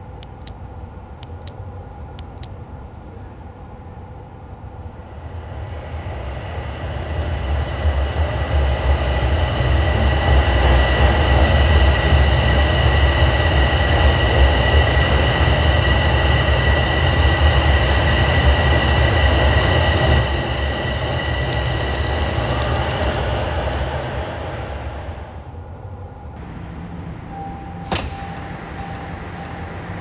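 Toronto subway train (TTC Line 1) pulling into an underground station. Its rumble builds over several seconds, runs loud for about twelve seconds, then dies away as the train slows to a stop. It is left with a steady low hum as it stands at the platform, and a sharp click near the end.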